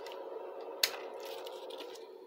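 Wires and alligator-clip test leads handled on a desk, with a single sharp click a little under a second in, over a steady faint hum.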